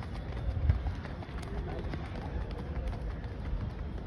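Faint voices of people talking in the background over an uneven low rumble.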